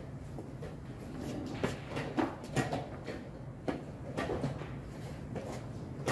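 Wooden chess pieces knocking on a wooden board and a chess clock being pressed during fast blitz play: a series of irregular sharp knocks and clicks over steady room noise.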